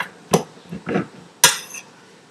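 A table knife knocking and scraping against a plate while cutting a grilled sandwich in half: about four sharp clinks, the loudest about a second and a half in, each ringing briefly.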